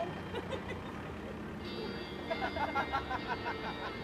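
A steady hiss from a lit gold firework fountain under onlookers' voices, with a quick run of 'ha, ha' laughs in the last second or two.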